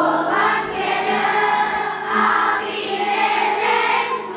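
Children's choir singing together in held, sustained notes. The voices come in louder right at the start.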